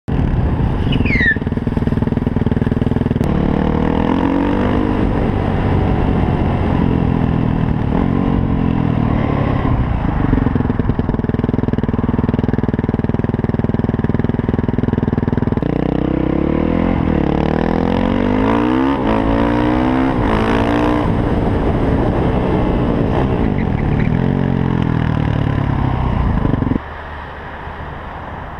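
Yamaha WR450F supermoto's single-cylinder four-stroke engine running under the rider, its pitch repeatedly rising and falling as it revs and shifts. The sound jumps abruptly where clips are spliced and drops much quieter about a second before the end.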